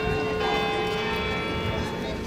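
Church bells ringing: several struck tones overlap and hang on, with a fresh low note as the sound begins and another about half a second later.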